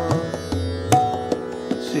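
Indian classical accompaniment: a tanpura drone with plucked strings under everything, tabla strokes with the bass drum's bending pitch, and a held harmonium note about a second in.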